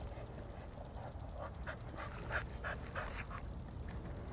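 A dog panting in short, quick breaths, a few to the second, for about two and a half seconds.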